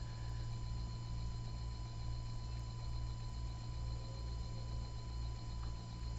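Steady background noise: a low hum with a thin, steady high-pitched tone over faint hiss, unchanged throughout.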